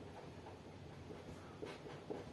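A pen writing on paper: faint scratching of the pen strokes, a little more distinct near the end.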